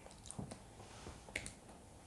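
A few faint, sharp clicks of a laptop trackpad being pressed, with the clearest pair just past the middle.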